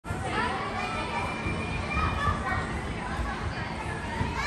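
Many children's voices chattering and calling out over one another, indistinct, at a steady moderate level.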